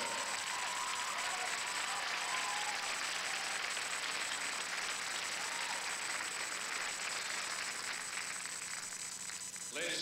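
Audience applauding, thinning out near the end.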